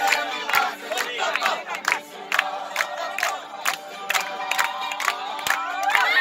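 A crowd shouting and singing along over a steady beat of sharp percussive strikes, about two and a half a second.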